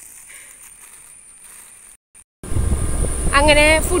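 Fairly quiet for the first two seconds, then after a brief dropout a loud, steady low rumble of wind on the microphone of a moving scooter begins, with a person's voice over it near the end.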